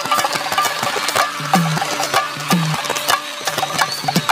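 Indian folk-style band music driven by a dholak: deep bass strokes that drop in pitch, alternating with sharp slaps, in a steady rhythm.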